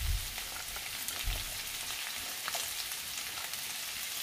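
Sliced onions sizzling steadily in hot sesame oil in a wok as carrot pieces are tipped in from a plate, with a couple of dull low bumps near the start and about a second in.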